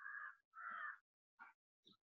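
A crow cawing faintly: two harsh caws of about half a second each in quick succession, then a shorter third call about a second and a half in.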